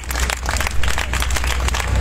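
Crowd applauding and clapping, a dense, irregular patter of hand claps over a steady low hum.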